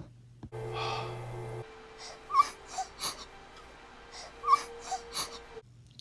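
A female cartoon character crying: short gasping sobs in two groups of about three, over a steady held background note.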